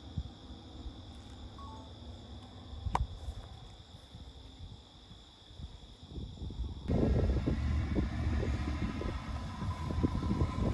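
Dodge Durango's engine running faint and distant, with a single sharp click about three seconds in. About seven seconds in the sound cuts suddenly to the SUV much closer and louder, driving over the dirt track with wind on the microphone.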